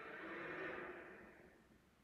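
Very faint episode soundtrack, fading out over about the first second and a half into silence.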